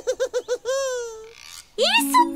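A cartoon character's voice laughing: a quick run of short 'ha-ha' beats, then one long drawn-out note that falls slightly and fades out.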